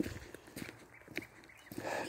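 Faint footsteps and small knocks of a handheld phone being carried by someone walking, a loose scatter of soft clicks, with an intake of breath near the end.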